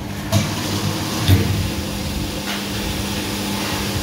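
Automatic 20-litre bottle filling machine running with a steady hum while water pours from its filling nozzle into the bottle. A few short knocks, the loudest about a second and a half in.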